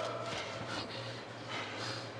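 Heavy breathing of an MMA fighter, a few breaths heard over a low steady hum; the breathing is laboured from a rival's body triangle squeezing his torso late in the fight.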